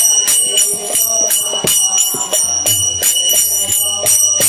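Instrumental break in a devotional kirtan song: small hand cymbals (karatalas) struck in a steady rhythm, about three to four strokes a second, their metallic ring sustaining between strokes over softer accompaniment.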